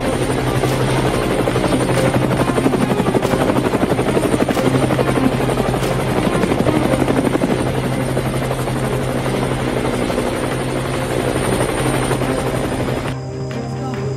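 Helicopter rotor blades beating rapidly and loudly over a steady music bed. The rotor noise cuts off suddenly about a second before the end, leaving the music.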